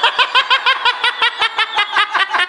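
A person laughing: a fast, even run of high-pitched giggles, about six a second.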